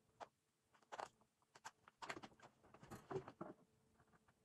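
Plastic flea collar being fitted around a small dog's neck: faint scraping and clicking as the strap is handled and pulled through its buckle, a few short sounds about a second in and more through the second half.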